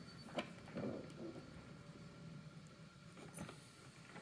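Faint handling noises as a hard-shell guitar case is opened: a few soft clicks and a brief rustle.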